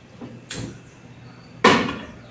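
A metal cooking pot knocking onto the iron grate of a gas stove: a light knock about half a second in, then a louder clunk near the end as it is set down on the burner.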